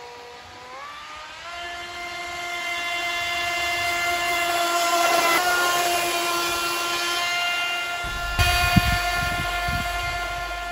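Miniwerft Kaiser K 500 1:6 scale radio-controlled jetboat running across the water: a high-pitched mechanical whine that drops in pitch at the start, rises again after about a second, then holds steady and grows louder. Low thumps come in near the end.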